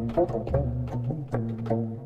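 Korean traditional instrumental music: plucked string notes that bend and waver in pitch over a steady low sustained tone, with a few sharp drum strokes.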